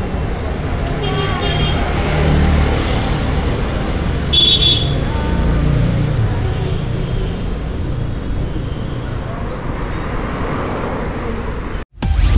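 Street noise: a steady traffic rumble with people talking, and a short high-pitched horn toot about four seconds in.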